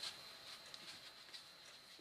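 Faint, soft rustling of cotton wool and gauze being twisted and pressed between the fingers, with a few tiny scratchy ticks over near-silent room tone.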